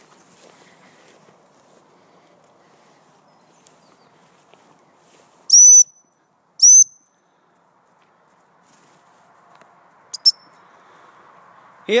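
Two loud blasts on a high-pitched gundog whistle about five and a half and six and a half seconds in, each swooping up quickly into a steady shrill note, then two short quick pips about ten seconds in. These are whistle commands to a working English springer spaniel.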